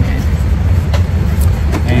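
Steady low rumble of an airliner cabin on the ground before takeoff, with a couple of light clicks from a hand in a seat storage bin.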